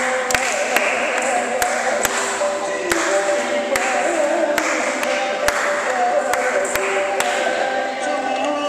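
Mohiniyattam dance music for practice: a voice singing a slow, wavering melody over sharp, regular taps that keep the beat about twice a second.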